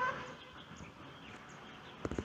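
Quiet outdoor background with faint, scattered bird-like chirps, and a brief, louder pitched call right at the start.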